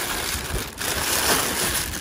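Thin plastic bag crinkling and rustling as it is gripped and lifted out of a box.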